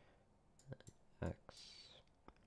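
A few faint, sharp computer mouse clicks as the button is pressed and released to draw strokes with the mouse.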